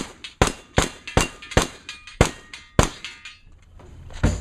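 A string of seven gunshots fired in quick succession, about two and a half a second at first, the gaps widening slightly toward the end, then a pause.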